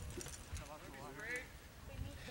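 Faint, distant voices of spectators chattering, over a low rumble with a few soft knocks.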